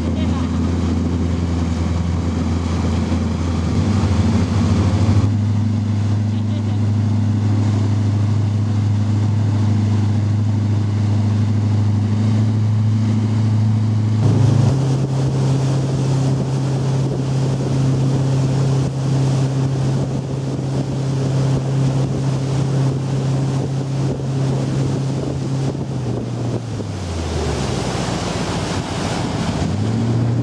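Motorboat engine running steadily at towing speed, with water rushing past the hull and wind on the microphone. Its pitch shifts a couple of times, and near the end it falls as the engine throttles down.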